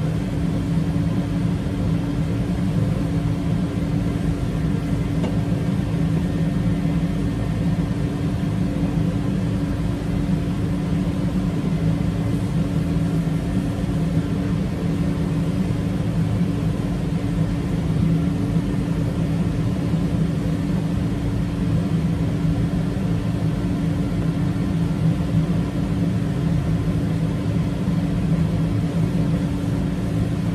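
A steady low mechanical hum with a whir, unchanging throughout: some machine running continuously.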